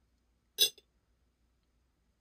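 A single short clink about half a second in as a black metal 2.2-inch RC wheel is set down onto the tire and wheel half on a scale, then near silence.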